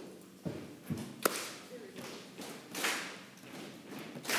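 Handling noise at a lectern: a few light taps and knocks in the first second and a half, then soft rustling, as the speaker sorts his notes.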